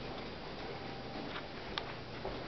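Light, irregular clicks and taps from people walking along a carpeted hallway, over a steady low hum of background noise; the sharpest click comes near the end.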